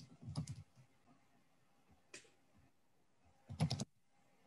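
Typing on a computer keyboard, picked up by an open microphone on a video call: a quick run of keystrokes at the start, a single click about two seconds in, and another short run near the end.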